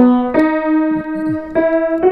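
Single mid-range notes played one after another on a c1870 Hagspiel grand piano: a new note is struck about a third of a second in and another about a second and a half in, each ringing on. The tone is slightly thin compared to a modern piano, and the instrument is well below pitch and out of tune from long neglect.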